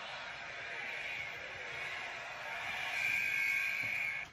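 A steady hiss-like noise with no clear tone or rhythm, growing a little louder about three seconds in.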